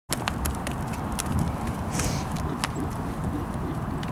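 A horse cantering on soft dirt and grass, its hooves thudding, moving past and away. The sharp hoof strikes come thick for the first two and a half seconds, then thin out.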